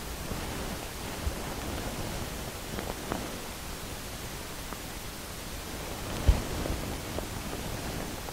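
Steady hiss of room noise with a few faint taps and knocks from a stretched canvas being handled and tilted, including one low thump a little after six seconds in.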